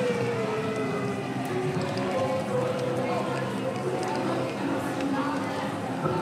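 Indistinct chatter of several voices mixed together, with no clear words, over a steady low hum from the band's amplification.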